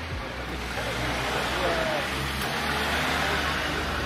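A small car driving past close by on a narrow street, its engine and tyre noise growing louder about a second in, with people talking nearby.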